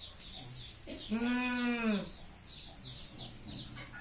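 A single drawn-out call about a second long, starting about a second in, its pitch rising then falling, with faint high chirps repeating throughout.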